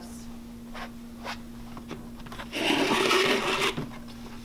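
Handling noise: a few light clicks, then a loud rustling, scraping burst lasting about a second just past the middle, over a steady low hum.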